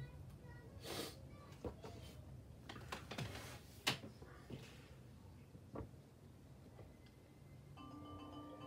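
Handling noise: paper rustling and a few sharp clicks, the loudest about four seconds in. Near the end a recorded concert-band arrangement starts playing with held notes.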